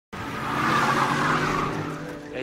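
A car engine running with its tyres squealing as it pulls up, swelling about a second in and fading toward the end.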